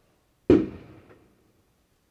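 A single sharp knock about half a second in that fades quickly, followed by a faint tick.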